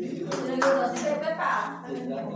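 Several hand claps among the voices of a group of people.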